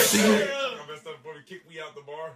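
The song's full band has just stopped, leaving a short fading tail, then a quiet man's voice that trails off over the next second and a half.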